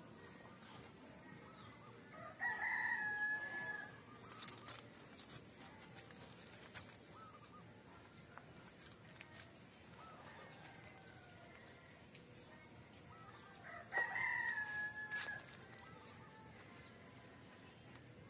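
A rooster crowing twice, about eleven seconds apart, each crow a long held call that rises, holds and falls away at the end. A few faint clicks come in between.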